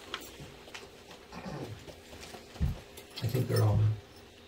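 Brief pitched vocal sounds: a short falling one about a second and a half in, and a louder low one held for most of a second near the end. Between them there is a single low thump.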